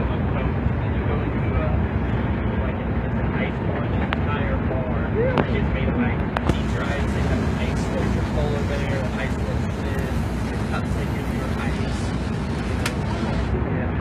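Steady low rumble of a moving Greyhound coach's engine and road noise, heard inside the passenger cabin. Faint voices of other passengers come through now and then.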